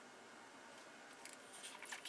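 Faint room tone, then from about a second in a short cluster of small crisp clicks and rustles from a plastic syringe of epoxy being handled.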